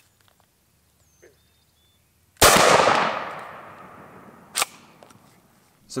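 A single 12-gauge shot from a 28-inch-barrelled Benelli Super Nova pump shotgun, about two and a half seconds in. Its report echoes and dies away over about two seconds, and a short sharp click follows about two seconds after the shot.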